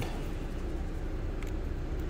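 Steady low hum of a 2022 Ford Maverick's 2.0-litre EcoBoost four-cylinder idling with the air conditioning running, heard from inside the cab.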